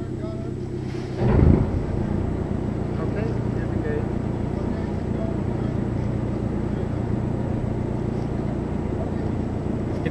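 The submarine's engine running with a steady low hum. About a second in it rises in a brief loud surge as the boat goes into slow reverse, then runs on as a louder, steady low rumble.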